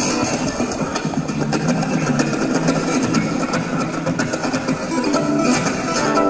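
Electro-acoustic guitar played through a small amplifier: a continuous instrumental run of plucked notes and chords.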